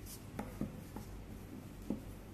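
Faint handling of a rope on a tabletop as a double fisherman's knot is pulled tight: a brief rub at first, then four light knocks, the sharpest near the end.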